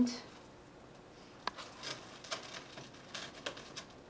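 Sheer wired ribbon being twisted and pinched by hand, giving a scatter of light crackles and clicks.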